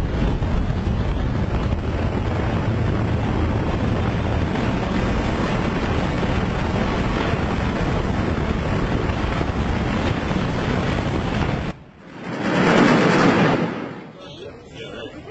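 Steady, loud, deep noise of a high-rise building collapsing in a demolition implosion. It stops abruptly about twelve seconds in, and a second loud rush then swells and fades near the end.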